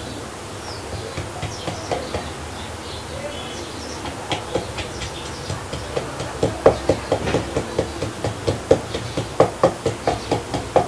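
Wooden pestle pounding chili pepper, garlic and herbs in a mortar: a run of dull knocks, faint at first, then a regular, louder beat of about three or four strokes a second from about six seconds in.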